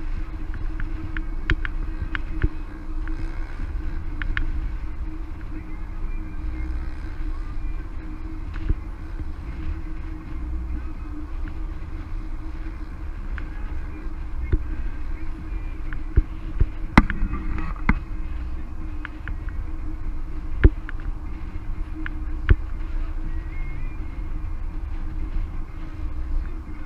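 A car driving along a road, heard from a camera mounted on its hood: a steady engine hum and tyre rumble, with scattered sharp clicks and knocks that are loudest in the second half.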